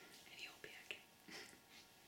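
Near silence broken by a few faint, short, breathy puffs of a woman's soft laughter.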